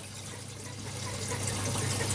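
Reef aquarium water circulation: a steady trickle of moving water over a low hum from the tank's pump, getting slightly louder through the second half.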